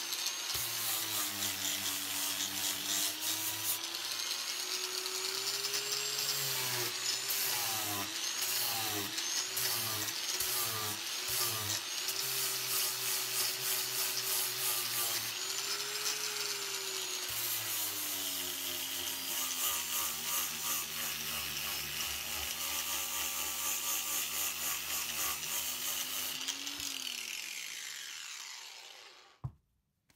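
Angle grinder with a sanding disc, its speed set by an inline 240-volt dimmer switch: the motor's whine rises and falls as the dimmer is turned, swinging up and down several times in quick succession in the middle, then running at a lower speed. Near the end the grinder winds down to a stop, followed by a single knock.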